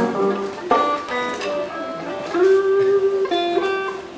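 Grand piano being played: a short passage of single notes and chords, one note held longer about halfway through.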